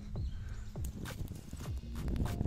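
A few soft, irregular knocks and rustles from a person moving about in a vegetable plot.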